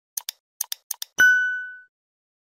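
Animated end-screen sound effect: three quick pairs of short clicks, then a single bell-like ding that rings out and fades over about half a second.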